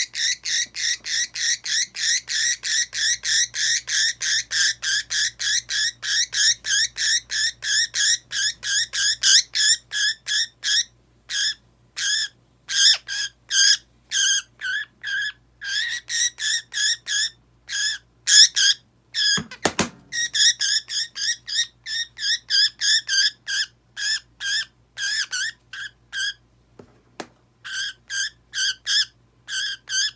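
Budgerigar held tight in the hand, screeching without pause: a rapid string of shrill calls, about four or five a second, broken by a few short gaps. These are the alarm calls of a bird restrained for nail clipping. A brief low thump comes about two-thirds of the way through.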